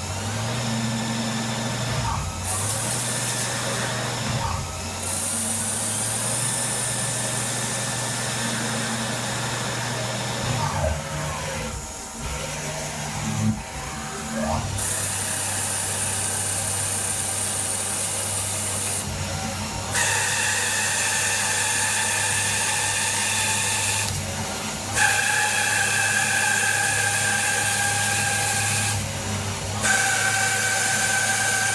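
CNC lathe turning a metal bar: a steady spindle hum under high-pitched whining tones from the cutting tool. The whine grows stronger in the second half and breaks off briefly a few times, with short gliding pitch changes around the middle.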